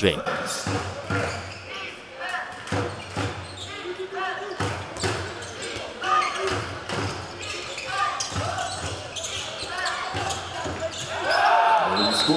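Handball bouncing on a sports-hall floor as it is dribbled and passed, a run of short thuds at irregular spacing, with players and spectators calling out in the hall.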